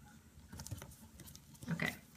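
Faint rustling and soft crinkles of origami paper being handled and folded by hand, with a few light ticks as the paper is pressed. A short breathy vocal sound near the end.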